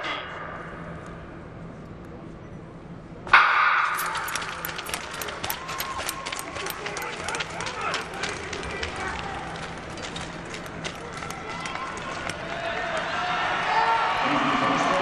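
A starter's gun fires about three seconds in, sending off a 1000 m speed-skating race; it is followed by many sharp clicks and voices.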